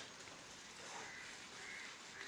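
Faint bird calls over a quiet background.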